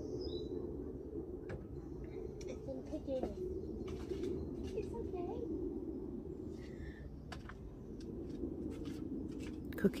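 Quiet garden ambience: a steady low hum with a few faint bird chirps and scattered soft knocks.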